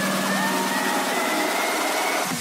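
Electronic dance music build-up: a slowly rising synth tone with swooping glides over the top, the bass cut away.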